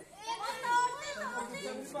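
A crowd's voices: women and children talking and calling out over one another.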